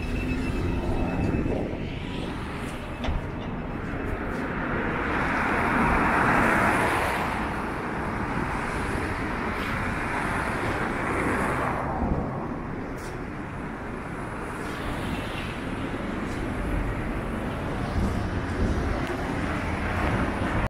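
Steady city street traffic, with a vehicle passing close by: its noise swells from about four seconds in, peaks, and fades away by about twelve seconds.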